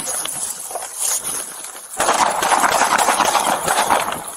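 Handling noise on a body-worn camera during a sudden close struggle: irregular knocks in the first half, then from about halfway a loud, dense rustling and scraping of clothing against the microphone.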